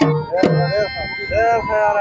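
Harmonium and tabla playing: a few tabla strokes about half a second in, then the drumming stops while the harmonium's held notes go on and a voice comes in over them.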